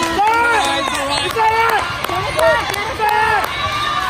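Several high-pitched young girls' voices calling and shouting over one another, no single clear voice.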